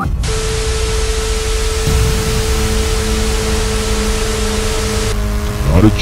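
Loud TV static hiss with a single steady tone beneath it, cutting off about five seconds in; a voice starts just before the end.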